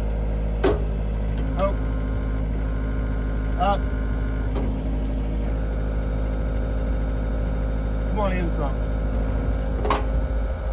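John Deere 333E skid steer's diesel engine running steadily while its post driver is lowered over a steel T-post, with a few short vocal sounds over it.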